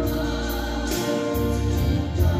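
A woman singing a gospel song into a microphone, holding long notes with vibrato, over an instrumental accompaniment with deep bass notes.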